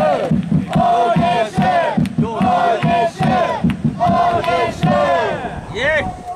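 Football supporters chanting in unison over a steady, rhythmic drum beat.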